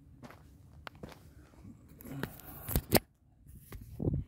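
Footsteps on a gravel dirt trail, a few scattered steps at first, then handling noise of the camera phone being picked up, with two loud sharp knocks a little before the end.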